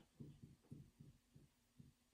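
Faint, dull strokes of a dry-erase marker on a whiteboard as a word is written, a few short irregular scrapes a second.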